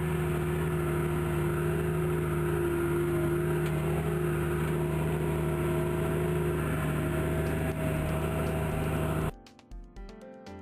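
Tractor engine running steadily at a constant pitch while pulling a plough through the soil. It cuts off abruptly near the end, and quieter music begins.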